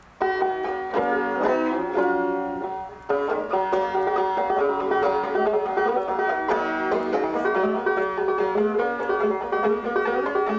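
Banjo played solo as the instrumental opening of a folk song. A few picked phrases ring in the first three seconds, then steady, continuous picking follows.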